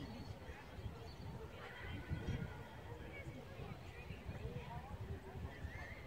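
Wind buffeting a phone's microphone in irregular low gusts, with faint distant voices in the background.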